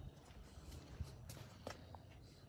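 Faint footsteps on a hard floor: a handful of short, uneven taps over a low background rumble.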